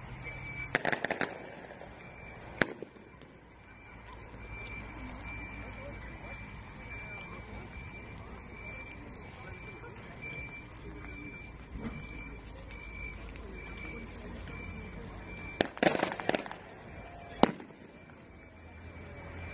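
A quick cluster of sharp cracks about a second in, and another near the end, each followed by a single crack, over a steady background rumble with a faint high beep repeating throughout.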